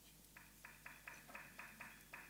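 Faint run of about eight short blips, roughly four a second: a MacBook's volume-change feedback sound, one blip each time its volume is stepped with the keys.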